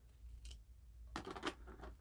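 Hands working the clear plastic insert of a tin Pokémon lunchbox: a faint tick about half a second in, then a run of small plastic clicks and crackles in the second half.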